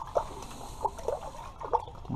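Water splashing and dripping in an ice-fishing hole as a hand works in it to land a fish: a few short, separate splashes.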